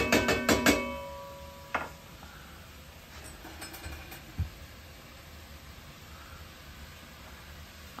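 Spoon tapped several times in quick succession against the rim of a metal cooking pot, which rings briefly, then a single clink about two seconds in and a dull low thump near the middle; otherwise only a faint steady hiss.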